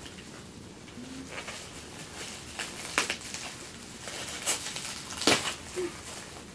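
Plastic wrapping and paper rustling and crinkling as items are handled, with a few sharper crackles, the loudest about five seconds in.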